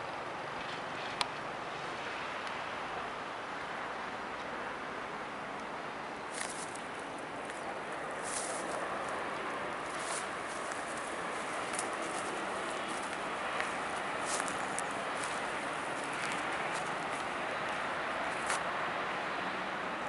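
Steady hiss of distant city traffic, with irregular crunching footsteps on dry ground and grass from about six seconds in.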